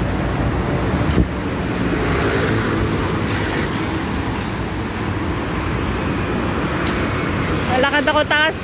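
Steady city road traffic: cars and scooters running past on a busy street, with a short sharp knock about a second in. A voice starts near the end.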